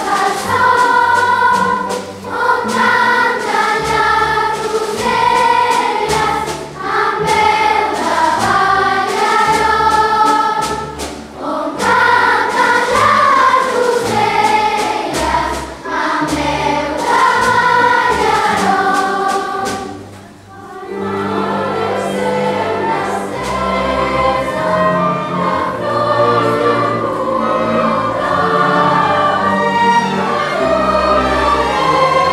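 A large children's choir singing a cantata with orchestral accompaniment, sustained low notes under the voices. About twenty seconds in, the sound drops briefly, then the music resumes with a fuller low accompaniment.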